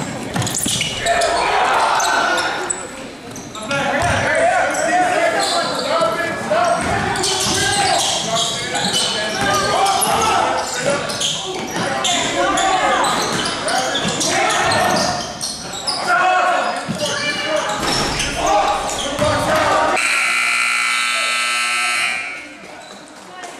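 Basketball game in a reverberant gym: players' and spectators' voices with the ball bouncing on the hardwood. Near the end a steady scoreboard buzzer sounds for about two seconds as the game clock runs out at the end of the period.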